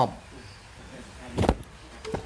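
A single short handling thump about one and a half seconds in, against a quiet room.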